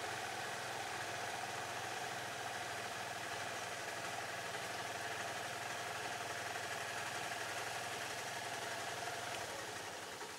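Small vehicle engine idling steadily, easing off slightly near the end.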